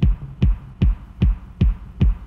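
Synthesized kick drum, made on a Yamaha CS5 synthesizer, playing alone in a steady beat of about five low thumps in two seconds, in a stripped-back break of an 80s electronic track.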